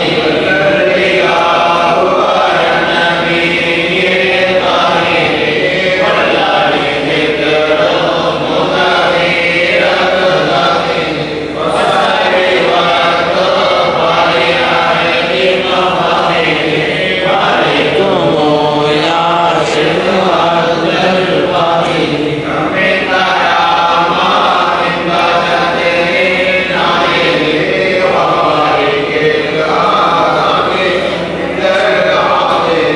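A group of men chanting an Arabic devotional baith (Sufi praise poem) together in unison, a continuous melodic chant.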